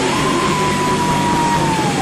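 Rock band playing live with electric guitar. One high note is held for over a second and then slides down in pitch near the end.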